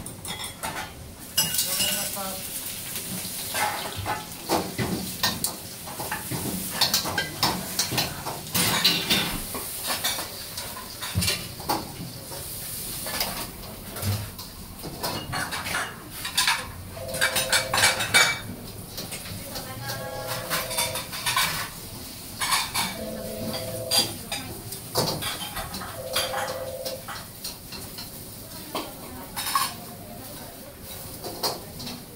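Ramen-shop kitchen at work: steel ladles, a wok and pots clanking repeatedly, with stir-fry sizzle underneath. A steady electronic beep sounds four times in the second half, each about a second long and roughly three seconds apart.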